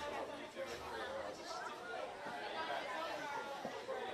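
Distant, overlapping voices of football players and people on the sideline calling out and chatting across an open pitch.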